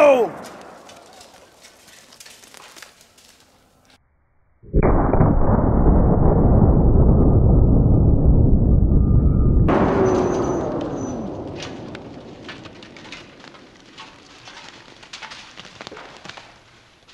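Slowed-down sound of a 500 Nitro Express double rifle shot in slow-motion playback: about five seconds in, a deep, drawn-out rumble that lasts about five seconds and cuts off abruptly into a fainter hiss with a falling tone that fades away.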